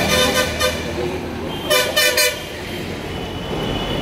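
A vehicle horn honking on a city street: a sounding at the start, then three short toots in quick succession about two seconds in, over a steady rumble of traffic.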